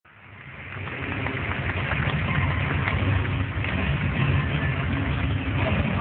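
Freestyle motocross bike engines running, fading in over the first second and then holding at a steady, low level.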